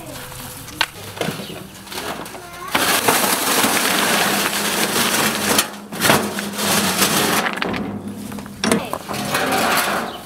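Two- to four-inch river cobble rocks being dumped from a steel wheelbarrow tray onto the bed. A few single stone clacks come first, then, about three seconds in, a long loud run of rocks rattling and tumbling out, easing off near eight seconds and picking up again near the end.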